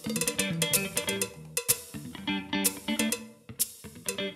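Instrumental funk groove: plucked electric guitar and bass guitar over a drum kit with hi-hat.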